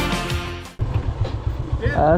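Rock music cuts off under a second in, leaving a Honda CB 150F motorcycle's single-cylinder engine idling with a low, uneven thump. Near the end a man's voice begins a greeting.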